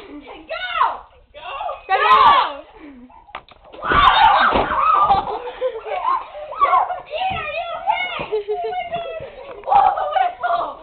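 Excited shouting, screaming and laughter from several people. About four seconds in comes a loud burst of thumping and banging under the voices: a box with a person inside tumbling down stairs.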